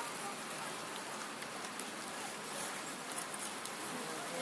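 Quiet, steady background noise with faint, distant voices and a few light clicks.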